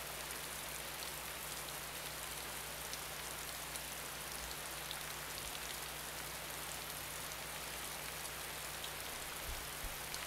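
Steady hiss of background noise with a low, steady mains hum under it, and a few soft low bumps near the end; no telephone ring is heard.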